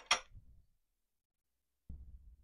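A light metallic clink of aluminium workpieces knocking together, with a short low rattle after it. A softer low knock follows near the end.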